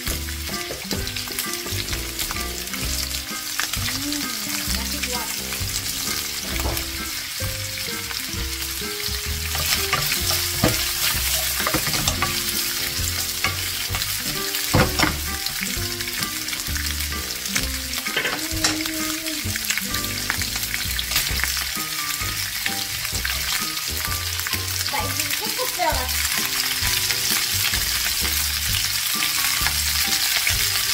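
Sausage slices and vegetables sizzling in oil in a frying pan, a steady hiss with scattered sharp crackles. It gets a little louder about ten seconds in.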